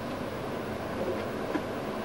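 Steady background hiss and low hum of room noise in a pause between speech, with a few faint clicks.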